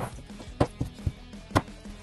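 A few light knocks of a chipboard drawer side panel being set against the drawer base as it is test-fitted into its drilled holes, the sharpest about one and a half seconds in.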